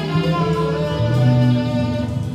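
Live jazz septet of saxophone, piano, guitar, double bass, fretless bass, Fender Rhodes and drums playing long held notes. A low bass note comes in about a second in.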